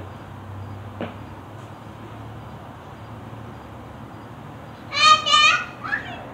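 A toddler's two loud, high-pitched squeals about five seconds in, with a short third one just before the end, over a faint steady outdoor hum.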